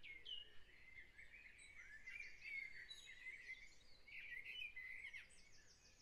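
Faint dawn chorus of many songbirds, with overlapping short chirps and whistles throughout.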